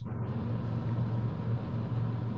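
A steady low hum with a faint even background noise, unchanging throughout.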